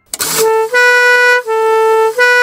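Two-tone air horn from an old ambulance air siren, sounding after a brief rush of air and then alternating between a low and a slightly higher note about every two-thirds of a second.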